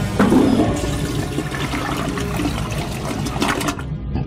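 A toilet flushing: a rush of running water, strongest in the first second, that dies away near the end.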